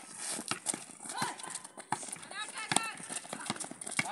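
Children calling out during a basketball game on an outdoor concrete court, with a scattered run of sharp knocks from the ball bouncing and feet hitting the concrete.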